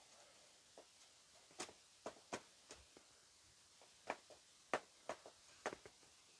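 Knife blade ticking and scraping against the metal wall of a round cake pan as it is run around the edge to loosen a baked pie: about a dozen faint, sharp clicks at irregular intervals.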